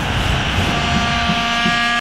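Logo sting sound effect: a rushing whoosh over a low rumble. About half a second in, a steady held chord of high tones joins it.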